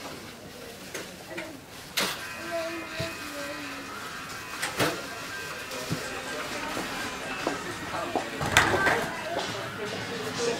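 Shopping-centre background of distant voices and background music, broken by a few sharp knocks, the loudest near the end.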